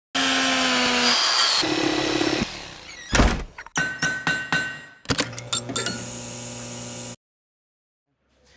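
A logo sting built from power-tool sounds: a motor running with a steady whine, then a sharp thunk about three seconds in, two runs of quick clicks, and a steady motor hum that cuts off suddenly about seven seconds in.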